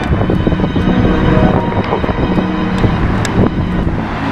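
Wind buffeting the camera microphone in a loud low rumble, with faint music underneath.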